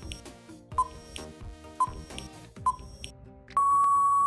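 Quiz countdown timer sound effect: soft background music with a short beep about once a second, then a long, loud steady beep near the end signalling that time is up.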